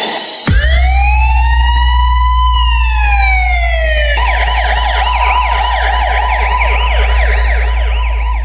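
Siren sound effect in a DJ sound-check track, over a steady deep bass tone. It gives one slow wail that rises and then falls over about four seconds, then switches to a fast, repeating yelp.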